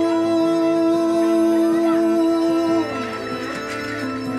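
Cello bowed in long sustained notes: one note held for nearly three seconds, then a step down to a lower note, over a steady low drone.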